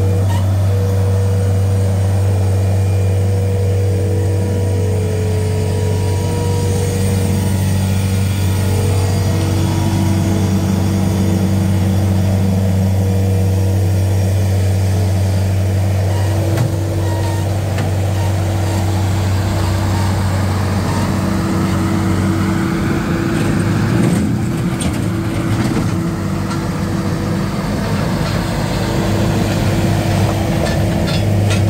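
A New Holland L665 Turbo skid steer's turbo diesel engine running steadily under load. In the second half a whine rises in pitch as the loaded bucket is worked, and a few clanks follow.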